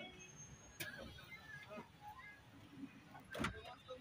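Faint low rumble of a moving bus heard from inside the cabin, with two knocks, one just under a second in and a louder one about three and a half seconds in.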